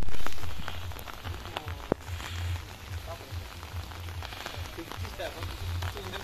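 Light rain falling, an even patter with scattered sharp drop ticks, over the low murmur of a gathered crowd.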